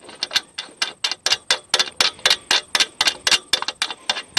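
A steel hex bolt being unscrewed by hand from a metal fitting, its threads clicking rapidly and evenly, about six clicks a second.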